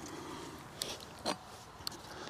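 Faint rustling of a climbing harness and tether gear being handled as the wearer moves, with a few soft clicks and knocks around the middle.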